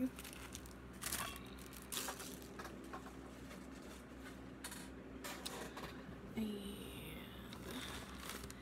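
Faint handling noises, a few scattered light knocks and rustles, as small objects and a bag are put down and picked up. A short spoken word comes near the end.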